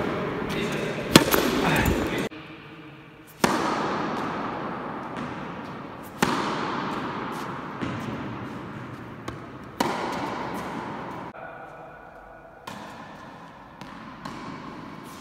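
Tennis balls struck with a racket and bouncing on an indoor court: a sharp hit every few seconds, each echoing in the large hall.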